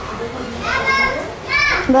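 A girl's voice breaking into sobs while she speaks: two high-pitched, drawn-out crying wails, one about half a second in and another just before the end, after which her speech resumes.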